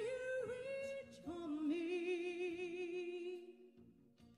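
A female vocalist singing sustained notes into a microphone: a shorter note with pitch slides, then a long held note with vibrato that fades away near the end.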